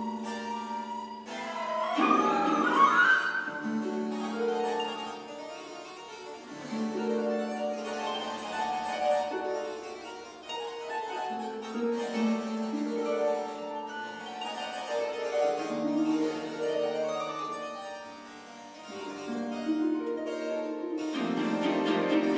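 Harpsichord playing rapid, rhythmic chords in a contemporary chamber piece, with flute and recorder joining in the first few seconds. A rising gliding line stands out about two to three seconds in.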